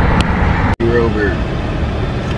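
Steady low road and engine rumble inside a moving car's cabin, with a sudden momentary dropout about three-quarters of a second in. A voice speaks briefly just after the dropout.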